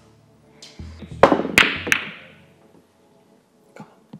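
A pool shot: billiard balls clacking, three sharp clicks in quick succession within about a second, the first the loudest.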